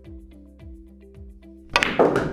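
A hard follow shot in pool: near the end, the cue strikes the cue ball hard and the cue ball hits the object ball with one loud, sharp crack that rings on briefly. Quiet background music plays throughout.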